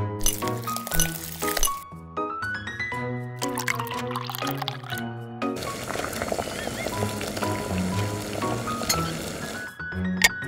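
Light background music with a plucked melody throughout. From about halfway, a steady hiss of water boiling in a small metal wok runs under the music until just before the end.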